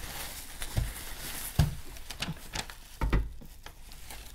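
Bubble wrap and plastic packaging crinkling and rustling as pieces are unwrapped by hand, with several sharp clicks scattered through.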